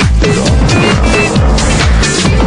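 Chicago house music playing in a DJ mix: a steady four-on-the-floor kick drum about twice a second under falling bass sweeps and busy percussion.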